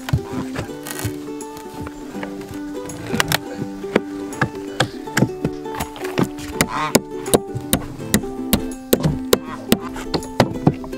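Background music with held tones, over repeated sharp knocks of a steel pry bar and a hammer working apart an old wooden crate. The knocks come irregularly and grow more frequent in the second half.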